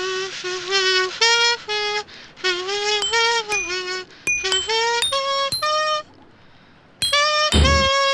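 A makeshift children's band plays a tune led by a buzzing comb-and-paper, in short notes. Light metallic clinks come in partway through. After a brief pause near the end, deep thumps join from a drum made of an upturned metal bin.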